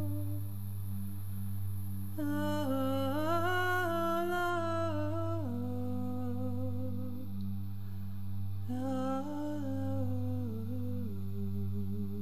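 Background music: a wordless voice humming a slow melody over a steady low drone, with two phrases, one starting about two seconds in and another near nine seconds.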